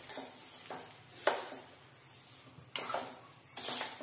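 A metal spoon stirring steamed gooseberries and sugar in a stainless steel kadhai, with several scrapes and clinks against the pan.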